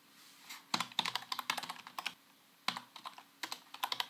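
Typing on a computer keyboard: a quick run of keystrokes about a second in, a short pause, then another run of keystrokes.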